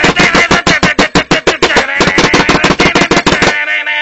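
Drum kit played fast: a rapid run of drum hits, about ten a second, over a sustained pitched ring, cutting off suddenly about three and a half seconds in.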